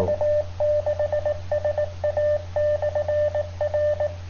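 Polmar DB-32 handheld transceiver's speaker playing a received repeater signal, opened with nobody speaking: one mid-pitched tone keyed on and off in quick short and long pulses, over a steady low hum.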